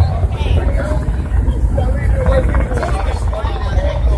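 Busy city street: voices in a crowd over a steady low rumble of traffic.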